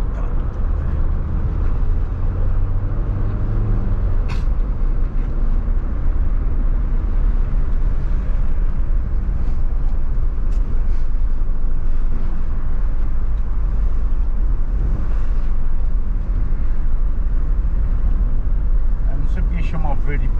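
Inside a moving car: steady engine and tyre rumble with wind noise coming in through an open window. A single sharp click about four seconds in.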